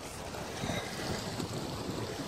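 Wind buffeting the microphone over the steady wash of sea water, with no distinct splash or impact.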